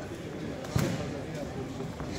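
A single sharp smack in the boxing ring about three quarters of a second in, from a punch landing or a boxer's foot striking the canvas, over the steady murmur of a crowd in a large hall.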